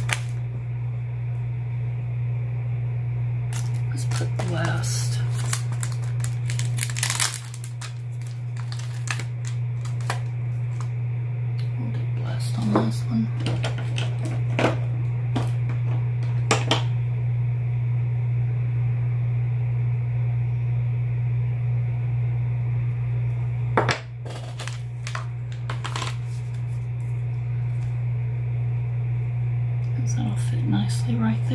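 A steady low hum runs throughout, with scattered light clicks and taps from clear photopolymer stamps being peeled off their plastic sheet and pressed onto a clear acrylic stamping block.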